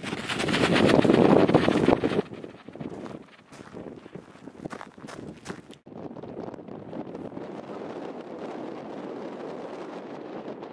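Wind buffeting the microphone, loudest in the first two seconds, with scattered knocks through the middle. After a sudden break about six seconds in, a steadier wind hiss.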